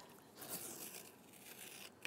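Faint, brief scratchy scrape of a linoleum-cutting gouge carving a line into a linoleum block, about a second long.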